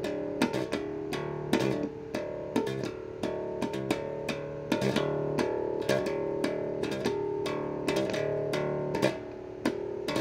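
Cheap electric bass guitar played through its small bundled practice amp: single plucked notes at about two a second, each starting with a sharp pluck and ringing on into the next. It is slow beginner's practice.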